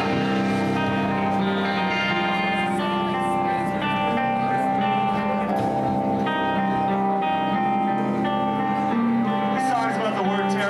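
Extreme metal band playing live: distorted electric guitars and bass hold ringing chords that change every second or so, with little drumming.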